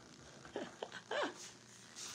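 A woman's soft, breathy laugh: a few short, quiet vocal sounds that fall in pitch, about half a second to a second and a quarter in.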